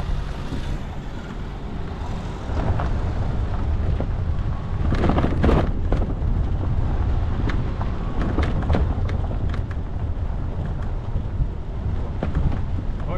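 Vehicle driving over a rough gravel forest track: a steady low rumble of engine and tyres, with sharp knocks and crunches from stones and bumps, the loudest cluster about five seconds in.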